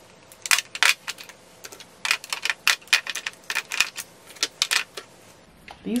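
Plastic lip gloss and lip balm tubes clicking and clattering against each other and a clear acrylic drawer organizer as they are handled and moved, in quick, irregular clicks.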